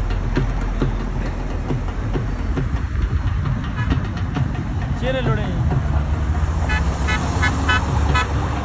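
Motor vehicles in a slow convoy running with a steady low rumble, with car horns tooting. People laugh near the end.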